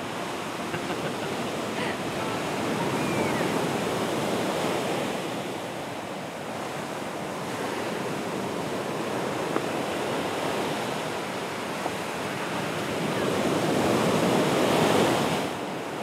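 Ocean surf breaking on a sandy, rocky beach: a steady wash of waves that swells and ebbs, growing loudest near the end.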